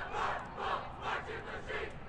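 A group of voices shouting a rhythmic chant in unison, about two shouts a second.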